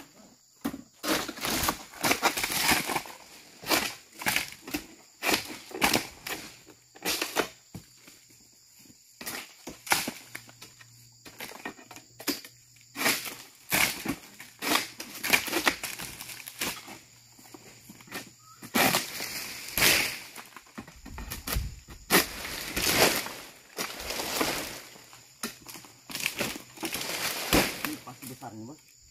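Dry oil palm fronds rustling and scraping as a long-pole harvesting sickle (egrek) hooks and cuts them, in irregular bursts about every second or two, the loudest in the later part.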